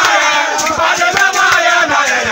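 A group of men chanting and singing loudly together in a Ghanaian 'jama' session, many voices at once over a steady percussive beat.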